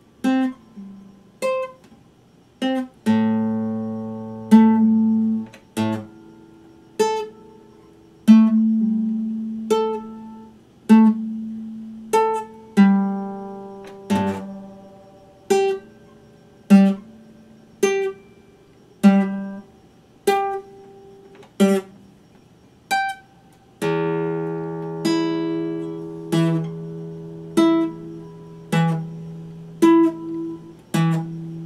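Classical guitar played fingerstyle: slow, separate plucked notes about one a second, each ringing and fading away. Two fuller chords ring longer, one about three seconds in and one about six seconds before the end.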